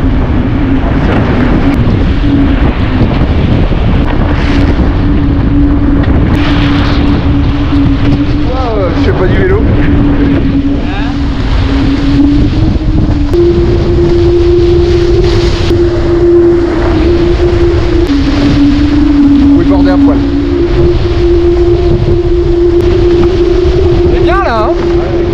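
Wind buffeting the microphone and water rushing past the hull of a Diam 24 trimaran sailing fast. A steady humming tone runs over it and jumps up and down in pitch a few times. Brief bits of voice come in about a third of the way in and at the end.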